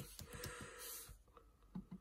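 Faint clicks of typing on a computer keyboard in the first half-second or so, then a short soft hiss about a second in.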